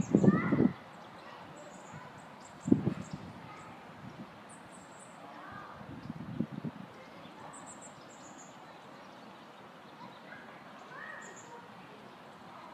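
Small birds chirping in quick, very high-pitched clusters over a steady outdoor background, with a few short low bursts: the loudest right at the start, others about three and six seconds in.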